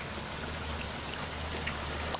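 Steady patter and splash of water on the surface of a fish tank, with many small plops, over a low steady hum.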